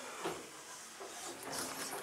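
Otis 2000 H hydraulic elevator's car doors sliding open at a landing, a faint hiss that grows in the second half.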